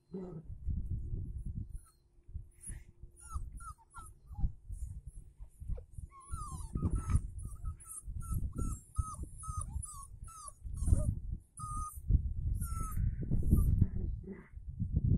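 Puppies yipping and whimpering during rough play with their mother: many short, high-pitched calls in quick succession from about three seconds in until near the end, over a low rumbling noise.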